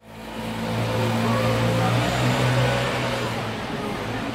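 A motor vehicle engine's steady low hum over outdoor street noise, fading in from silence at the start.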